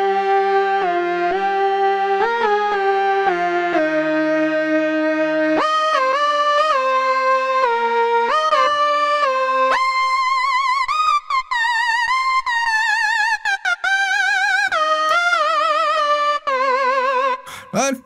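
Korg Minilogue XD synthesizer lead patch, with delay and hall reverb, playing a slow melody whose notes glide into one another. A lower line sounds beneath it for the first five or six seconds, and from about ten seconds in the notes waver with vibrato brought in from the joystick.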